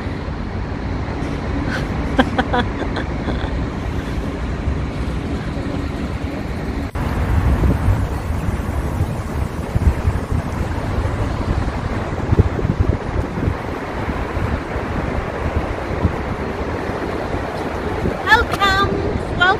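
Wind buffeting the microphone in an open city square, a fluctuating low rumble over steady outdoor noise that grows stronger about seven seconds in. There is a short laugh about three seconds in.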